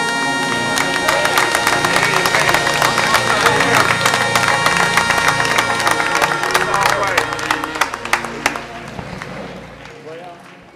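A gospel band ends a song on a held saxophone note, which fades about a second in. The congregation then applauds and cheers with dense clapping, tailing off near the end.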